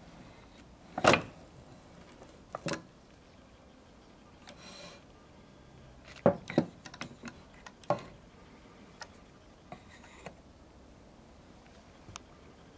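Beechwood toy timber truck being handled: hard wooden knocks and clacks as the crane arm and grapple are moved, the loudest about a second in and a quick cluster around six to eight seconds. Two brief scraping rubs of wood on wood come between them.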